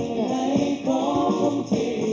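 A pop song with several voices singing together in harmony over a band accompaniment.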